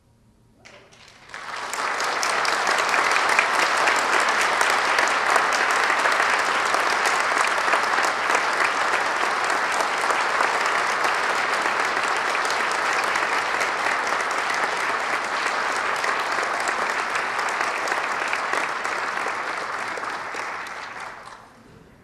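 Audience applauding. It starts about a second in, after a short silence, holds steady, then dies away near the end.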